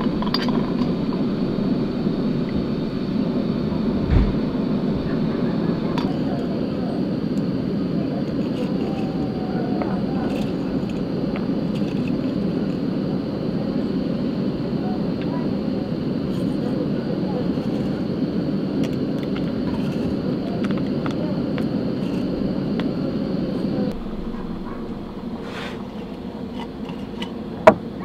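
Open fire heating a cauldron of red wine, making a steady rushing noise, with a low thump about four seconds in; the noise drops suddenly near the end.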